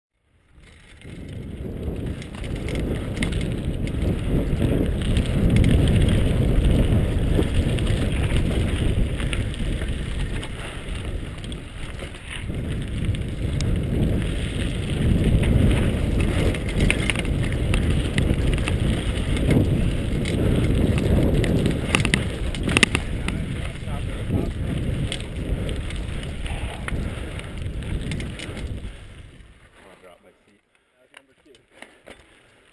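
Mountain bike riding down a dirt singletrack, heard on a bike- or body-mounted camera: a loud, steady rumble of wind and tyre noise with the bike rattling over the rough trail, swelling and easing with speed, and a few sharp knocks a little over two-thirds of the way through. It fades away near the end.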